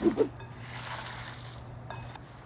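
Bare hands kneading and squeezing raw ground beef mixture in a glass bowl: soft, wet squishing, over a steady low hum.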